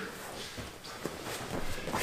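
Faint shuffling and a few soft thuds of bare feet and bodies moving on grappling mats as a grappler rises from the ground to his feet.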